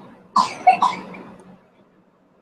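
A person coughing: a short run of two or three sharp coughs starting about a third of a second in and trailing off by about a second and a half.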